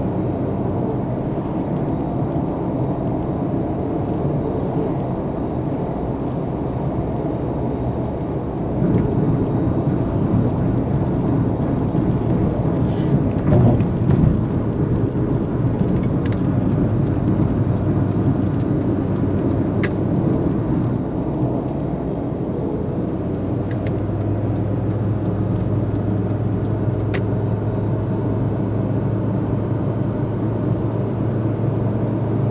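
Steady road and engine noise inside a moving car's cabin at cruising speed. It grows louder about nine seconds in, peaks briefly a few seconds later, and a steady low drone comes in near the end.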